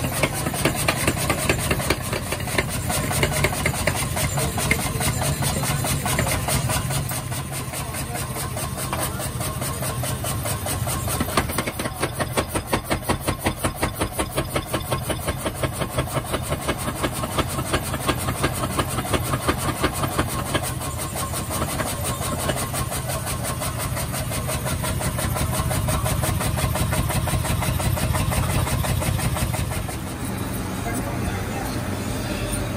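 Self-contained air power hammer running and striking red-hot steel on its anvil in a fast, even run of heavy blows over the constant hum of the machine's motor.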